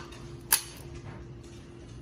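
A pull-tab can of wet dog food is cracked open, with one sharp pop about half a second in.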